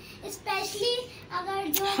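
A boy singing softly in short, wavering phrases between louder sung lines, with a brief click near the end.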